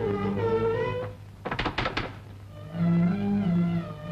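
Suspenseful orchestral film score: bowed strings holding long, sliding notes, broken about a second and a half in by three or four quick sharp knocks before the strings return on lower notes.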